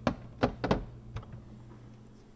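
A plastic food container set down and pushed onto a glass refrigerator shelf: four sharp knocks and clacks in the first second or so, then only a faint steady hum.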